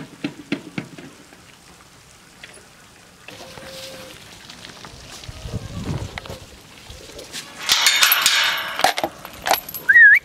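Metal tube pasture gate and its chain rattling as they are handled: a loud clatter about eight seconds in that lasts about a second, with scattered clicks before and after.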